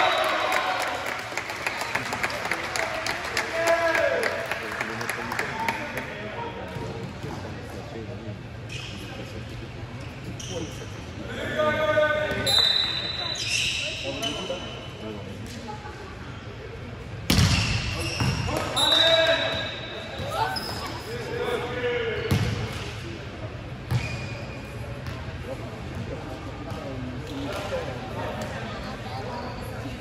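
Volleyball bouncing and being struck on a sports-hall floor amid players' shouts and calls, all echoing in the large gym. One sharp ball hit stands out a little past halfway.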